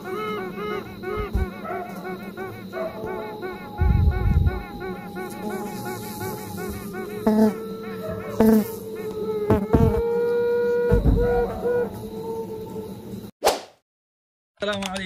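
Intro jingle with a bee-buzzing sound effect, repeating rapidly over music, with a few deep thumps. A quick sweep sounds near the end, then the sound cuts off.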